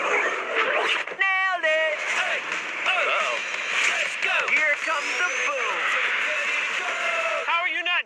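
Overlapping excited voices shouting and whooping, without clear words, with a sharp warbling cry about a second in.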